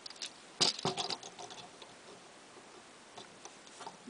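Hard plastic clicks and light rattling of a small Transformers action figure being handled and snapped onto the side of a larger figure's arm: a loud cluster of clicks about half a second to a second in, then scattered light ticks near the end.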